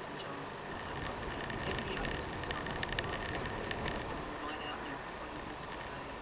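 Car driving slowly and picking up speed, engine and tyre noise heard from inside the cabin, with a run of light clicks in the middle.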